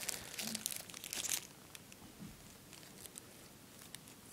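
Clear plastic wrapping on a Blu-ray case crinkling and tearing as it is worked at by hand. The crackling is densest in the first second and a half, then thins to a few faint crackles.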